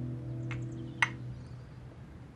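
Soundtrack music fading out under two light clicks of a porcelain coffee cup against its saucer, about half a second and a second in, the second one louder.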